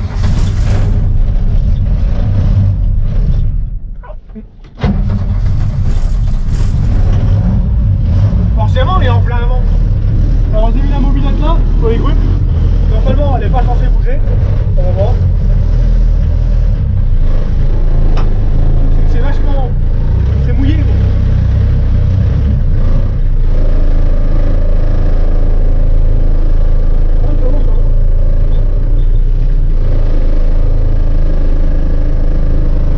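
Diesel engine of an old Mercedes truck started after glow-plug preheating, heard from inside the cab: it runs, dies away for about two seconds, catches again abruptly about five seconds in, then keeps running steadily.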